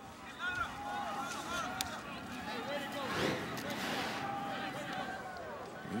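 Football stadium crowd ambience: a steady murmur of many distant voices with scattered shouts, swelling slightly midway.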